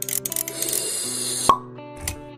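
Animated logo intro sting: a run of quick clicks, then a rising hiss ending in a sharp hit about one and a half seconds in, over held musical notes.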